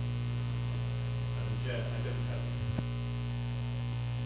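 Steady electrical mains hum on a chamber microphone feed, a low drone with a ladder of steady overtones. Near the middle there is a faint, brief murmur, and a single sharp click comes a little before the three-second mark.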